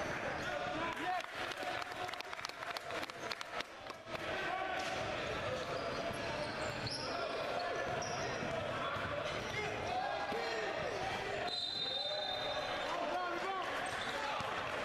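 Live sound of a basketball game in a large gym: the ball bouncing with sharp repeated knocks, most densely in the first few seconds, under players and spectators calling out. A short shrill tone sounds near the end.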